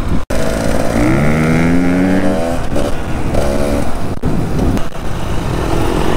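Enduro dirt bike engines running under way, one rising in pitch about a second in as it accelerates, then settling and changing pitch again. The sound drops out for an instant just after the start.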